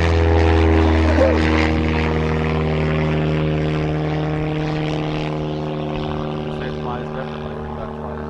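Radio-control biplane's electric motor and propeller droning at a steady pitch in flight, slowly fading as the plane moves away.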